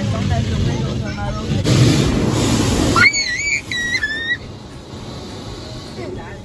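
Automatic car wash heard from inside the car: a low rumble with water spraying on the car, loudest in a hissing spray from about one and a half to three seconds in, which stops suddenly. Then a high, wavering whistle-like tone lasts about a second and a half.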